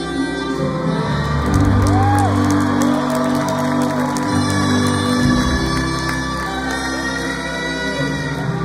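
A live rock band playing in an arena, heard from the audience with the hall's reverberation, sustained chords under a gliding melodic line.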